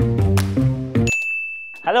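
Title music with a steady beat cuts off about a second in, followed by a single high electronic ding that holds steady for most of a second.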